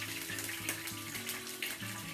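Hot oil sizzling and crackling in an electric grill pan as browned chicken pieces are lifted out with tongs, with soft background music.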